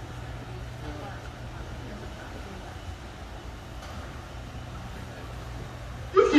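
Steady low hum aboard a ride boat moving along a water channel, with faint, indistinct voices in the background.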